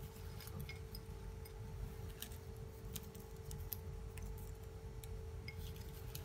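Flaked almonds being sprinkled by hand onto custard in a glass dish: faint, scattered light ticks at irregular moments over a steady low hum.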